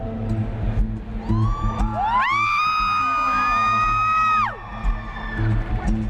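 Live acoustic guitar playing, with a long high-pitched whoop from the audience. The whoop rises about a second in, holds steady for about three seconds and then falls away.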